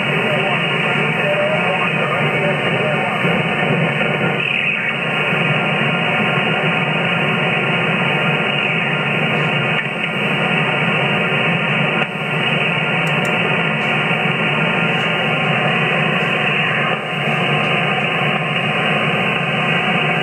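HF transceiver receiving upper sideband on 27.590 MHz in the 11-metre band: steady, narrow, muffled static hiss from the radio's speaker, with faint garbled sideband voices buried in it.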